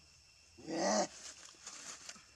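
A single short animal call, about half a second long, a little way in, followed by a few light rustles.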